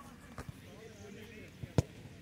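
A football struck hard in a shot: one sharp thump near the end, over faint voices.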